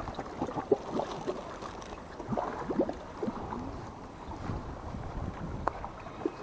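Small waves lapping and gurgling among the rocks at the water's edge, with many short gurgles and a few sharp clicks, over a steady low rush of water and wind on the microphone.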